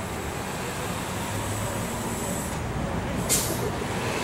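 Street traffic with buses running steadily. About three seconds in comes one short, sharp hiss, like a bus's air brakes releasing.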